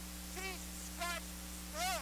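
A quiet pause in a room: a steady low hum, with three faint, brief pitched sounds spread across it, the last a little louder.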